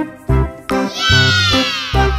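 Upbeat children's background music with steady bass notes. Under a second in, a long high cry starts abruptly and slides downward in pitch, laid over the music.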